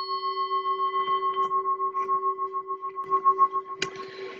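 Singing bowl ringing after a single strike, its tone wavering in a steady pulse of about four beats a second as it slowly fades. A short knock near the end.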